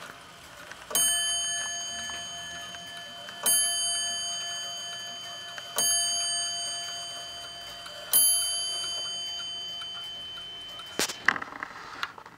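Weight-driven Dutch-style wall clock striking its bell four times, each stroke about two and a half seconds apart and left to ring and fade, followed by a short rattle of clicks near the end.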